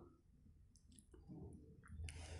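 Near silence: room tone with a few faint short clicks in the second half.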